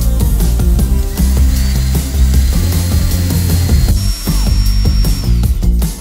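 Background music with a steady beat, over which an electric drill runs briefly: a thin high motor whine starts about a second and a half in, steps up in pitch about four seconds in, then falls away just before the end.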